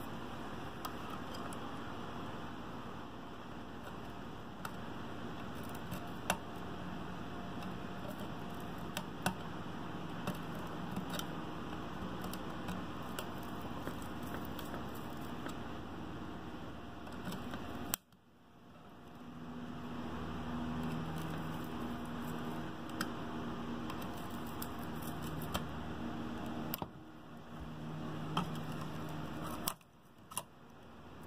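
Scattered small clicks and light scraping of a test-light probe and small screwdriver prying at a melted fuse holder on a car amplifier's circuit board, over steady background noise. The sound drops out sharply for a moment about eighteen seconds in.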